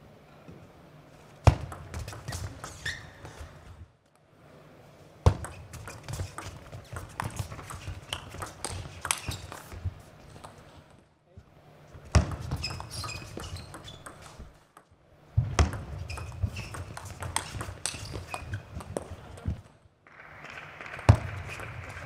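Table tennis rallies: a celluloid-type ball clicking off rackets and the table in quick, uneven succession, point after point, with short breaks between the rallies.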